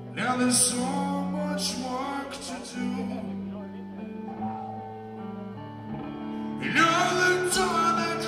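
A live rock band playing a slow song: held low notes under guitar chords that are struck and left to ring. The guitar grows louder near the end.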